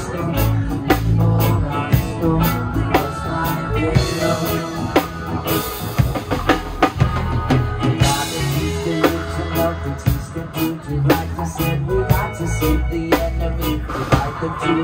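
Live band music: a drum kit with bass drum and snare keeping a steady beat under electric bass and guitars, with crash cymbal hits about six and about eight and a half seconds in.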